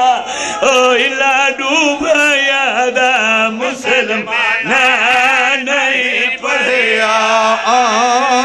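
A man's voice chanting a long melismatic lament on drawn-out vowels, the pitch wavering and ornamented throughout, with only brief breaks. It is the sung style of a zakir reciting masaib.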